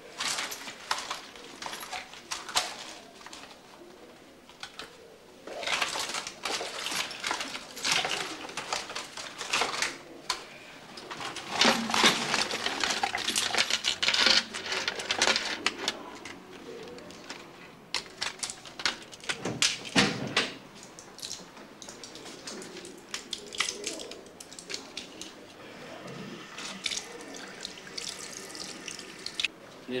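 Rustling and clattering of small items as a handbag is rummaged through and its contents tipped out, in irregular bursts that are busiest about six to nine seconds in and again around twelve to sixteen seconds.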